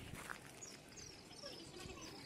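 Faint outdoor background with a few brief, distant animal calls.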